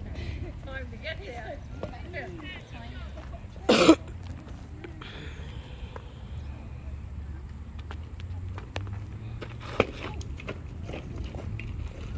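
Indistinct voices of people talking in the background over a low outdoor rumble, with a loud, brief burst of noise about four seconds in and a single sharp crack near the end.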